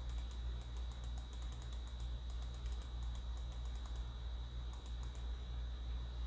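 Light, rapid clicking of computer keys, a dense run through the first three seconds and a short burst again near the end, over a steady low electrical hum and a faint high whine.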